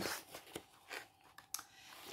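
A few faint, short clicks and rustles of handling, with quiet stretches between them.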